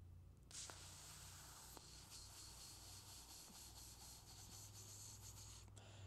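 A faint, steady scratchy hiss that starts abruptly about half a second in and stops abruptly just before the end, with a low hum underneath.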